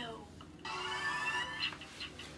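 A rising electronic tone of several pitches moving up together, starting just over half a second in and lasting just over a second: an edited-in transition sound.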